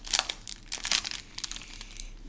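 Foil wrapper of a Yu-Gi-Oh booster pack crinkling as it is handled and the cards are pulled out: a run of sharp crackles, loudest in the first second and thinning out towards the end.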